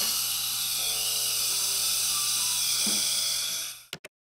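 Implant surgical drill handpiece turning a 3.5 mm Densah bur in the jawbone under saline irrigation: a steady high whirring hiss that stops abruptly near the end.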